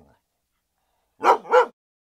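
A dog barking twice, two short woofs close together, starting a little over a second in after silence.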